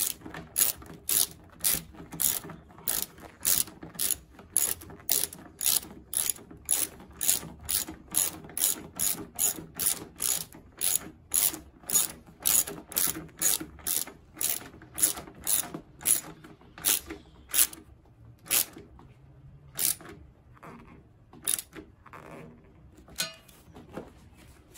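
Hand socket ratchet running in an 8 mm bolt, clicking in quick, even strokes about two a second. Near the end it slows to a few scattered clicks.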